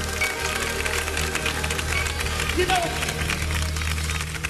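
Live gospel band music: sustained chords over a steady low bass, with drum and cymbal hits throughout.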